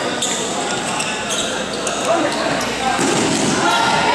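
Indoor basketball game: a basketball bouncing on the hardwood-style court amid shouting voices from players and spectators, echoing around a large gymnasium.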